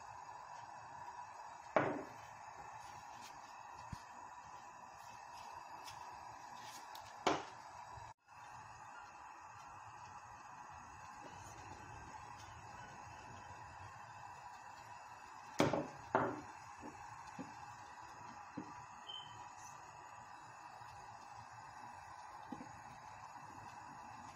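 Kitchen handling sounds around a stainless steel cooking pot: a few sharp knocks, about two seconds in, about seven seconds in and a close pair near the middle, with lighter taps in between. Under them is a faint steady hum.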